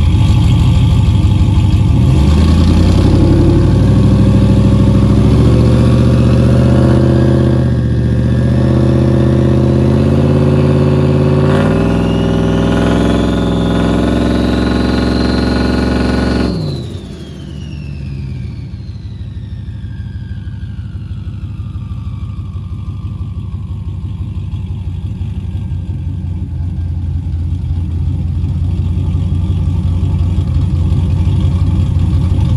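Ram Hemi V8 with a rear-mount turbo, revved and held up for about fifteen seconds, a turbo whistle rising in pitch near the end of the rev. The throttle then shuts suddenly, the engine drops back, and the turbo whine winds down in a long falling glide while the engine slowly builds again.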